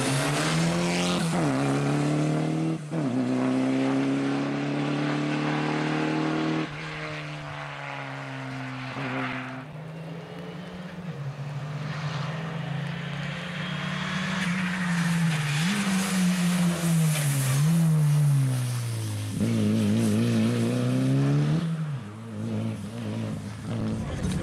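A rally car's engine at full throttle, revving up and dropping sharply in pitch at each gear change as the car drives past on a rally stage.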